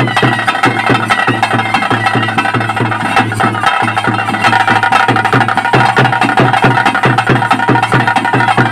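Ritual drumming accompanying a bhuta kola dance: drums beat a fast, even rhythm of about five strokes a second, with a held pitched tone sounding over them.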